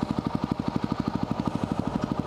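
2010 Yamaha WR250R's single-cylinder four-stroke engine idling with an even, low beat of about eleven pulses a second.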